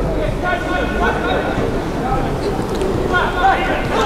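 Live pitch-side sound of a football match: faint voices of players calling out on the pitch over a steady low rumble of open-air ambience.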